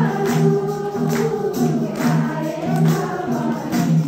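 Nepali devotional bhajan: a woman singing through a microphone with other voices joining, over steady held low tones, and a tambourine and hand clapping keeping a steady beat a little under two strokes a second.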